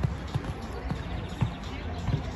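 Horse's hooves thudding on a sand arena at a canter, a string of dull low thumps.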